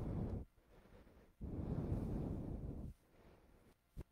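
A woman's audible breathing into a close microphone: a short breath at the start, then a longer, steady breath about a second and a half in, with quiet between.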